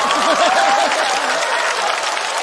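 Studio audience applauding, with a few voices heard over the clapping.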